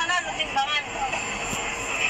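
A person's voice, bending up and down in pitch during the first second or so, over a steady background of noise.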